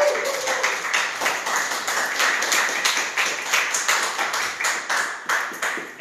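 Audience clapping: a dense run of many hand claps that slowly dies down toward the end.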